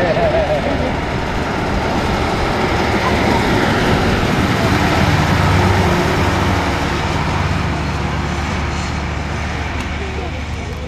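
Scammell Explorer 6x6 recovery truck's six-cylinder petrol engine running as it drives past, getting louder to a peak about halfway through, then fading as it moves away.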